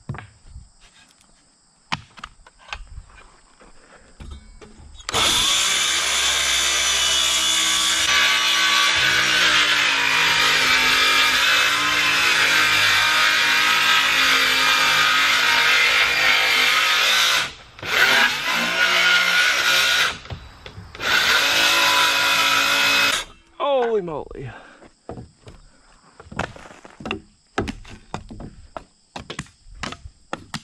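Circular saw cutting across the tops of wooden siding boards: one long cut of about twelve seconds, then two short bursts, and the blade spinning down with a falling whine. Light knocks of boards and handling come before and after the cuts.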